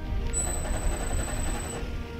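A heliostat's electric drive motor on its motorized mirror stand runs for about a second and a half, with a small steady whine, as it makes a minute tracking adjustment to the mirror. Background music plays throughout.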